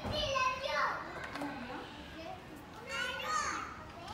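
Young children's high-pitched voices chattering and calling out in two short bursts, one at the start and another about three seconds in.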